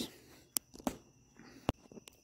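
Three brief, sharp clicks over low room tone; the last one, near the end, is the loudest.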